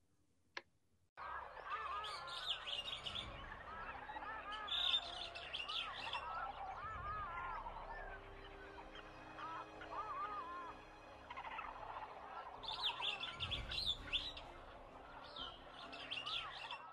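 A single click, then about a second in a jungle ambience begins: many birds chirping and calling over a steady background with a few held tones. The calls are busiest near the start and again near the end.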